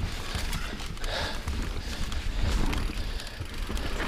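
Mountain bike rolling down a dirt singletrack: a steady rumble of tyres on the trail, with scattered clicks and rattles from the bike.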